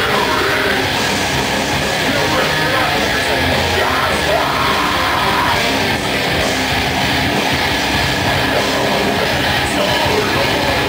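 Live heavy metal band playing at full volume: distorted electric guitars, bass and drums with a vocalist yelling over them, steady and dense throughout.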